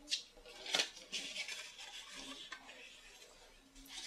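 White cardstock being folded and creased along its score lines by hand: two short paper scrapes in the first second, then a longer soft rubbing of paper on paper.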